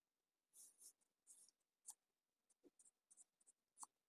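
Faint brushing and rustling of a hand stroking a white rabbit's fur: a few soft scratchy strokes in the first two seconds, then several short light scratches and clicks.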